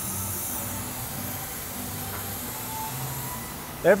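Oxy-fuel heating torch flame hissing steadily as it is held on the high spot of a bent steel pump shaft, heating it to straighten the shaft.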